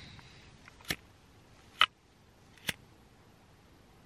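An empty orange disposable lighter struck three times, the flint wheel clicking and sparking without a flame: the lighter is out of fuel.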